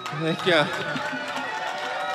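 Audience whooping and cheering just after a song ends, several voices at once in rising and falling calls.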